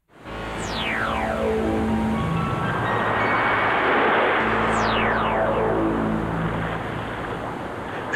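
Synthesizer cartoon score: two long descending stepped glides, one near the start and one about halfway through, over held low tones and a dense, steady wash like rolling sea surf.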